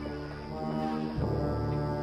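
Dramatic background score: low, sustained chords that change to a new chord a little past a second in.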